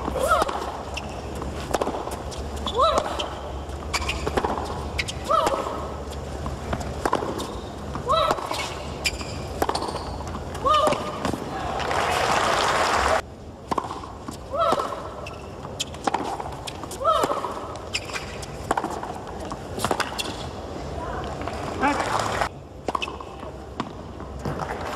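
Tennis rally: racket strikes on the ball every two to three seconds, each with a player's short vocal grunt. The crowd swells briefly about twelve seconds in.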